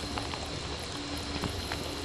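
Shower water falling on a GoPro Hero 7 Black, heard through the camera's own microphones: a steady hiss of spray with scattered drop taps.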